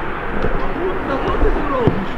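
Men shouting to each other across an outdoor football pitch, their voices distant and overlapping. There is a steady low rumble underneath, and a single sharp knock near the end.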